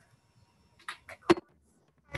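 Three short knocks in quick succession about a second in, the last the loudest, against near silence.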